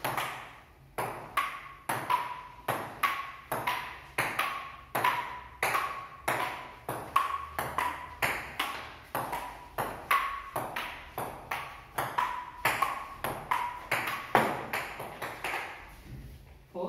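A long table tennis rally: the ball clicks sharply off the paddles and bounces on the table, about two to three knocks a second, each with a brief ring. The knocks stop just before the end.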